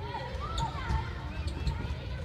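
Distant voices, bending in pitch mostly in the first second, over a steady low rumble.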